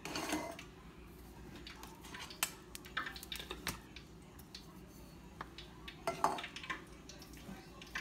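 Metal salmon can tapping and scraping against a plastic mixing bowl as the fish is shaken out of it: a scatter of light clicks and knocks.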